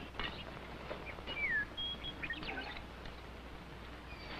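Faint bird chirps: a few short whistled calls, one sliding downward in pitch and one brief steady whistle, over the old film soundtrack's low hum and hiss.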